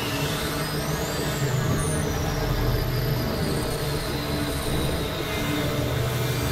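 Experimental synthesizer drone and noise music: dense, sustained low tones under a hiss, with a high whistling tone that rises and then slowly falls about a second in.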